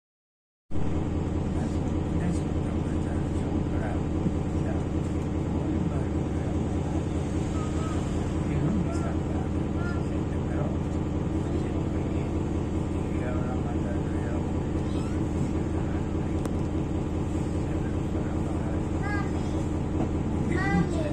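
Street ambience that starts abruptly under a second in: a steady low rumble of traffic, with faint voices and short high chirps over it.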